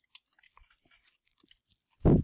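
Faint, scattered clicks of a computer keyboard and mouse over near silence, many small ticks spread unevenly through the moment.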